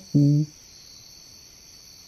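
Steady high-pitched chirring of crickets as a night ambience, with one short low vocal sound right at the start.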